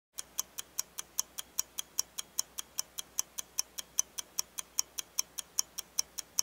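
Stopwatch ticking sound effect: an even run of sharp ticks, about five a second.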